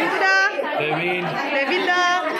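Several people chatting, their voices overlapping.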